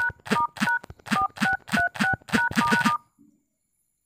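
Smartphone dial-pad key tones as a star-and-hash service code is typed in: about ten quick two-tone beeps, roughly three a second, stopping about three seconds in.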